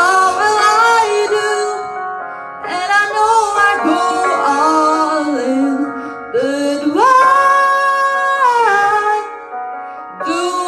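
A woman singing a slow melody in phrases over a sustained instrumental accompaniment, with a long held note about seven seconds in.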